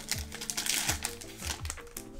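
Foil Yu-Gi-Oh booster-pack wrapper crinkling as it is torn open and the cards slid out, over background music with a steady beat.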